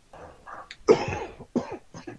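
A person coughing: a run of short rough coughs, the loudest one about a second in, followed by a shorter one.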